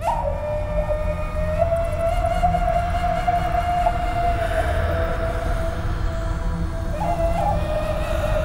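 Eerie horror film score: one long, slightly wavering high tone held over a low rumble.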